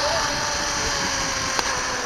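Zipline trolley pulleys running along the steel cable: a steady whirring rush with wind on the microphone, with a single click about one and a half seconds in.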